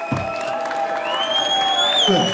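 Audience cheering and applauding, with a long, high, slightly rising whistle that starts about halfway through.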